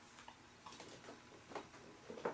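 Faint, irregular clicks and light knocks of small makeup products being rummaged through and handled.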